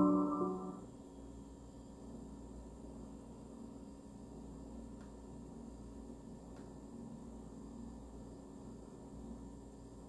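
Soft piano music dies away within the first second, leaving faint steady low hum and hiss.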